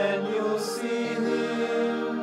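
Slow liturgical chant, sung in long held notes. A sung 's' comes a little past half a second in, and the note changes about a second in.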